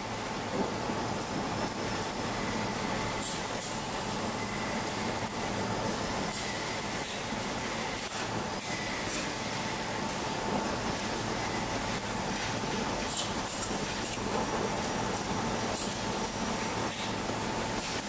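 Steady mechanical hum with a constant tone, from equipment running in a laser-cutting workshop. Scattered faint light clicks come from small pieces of thin cut glass being picked up and set down.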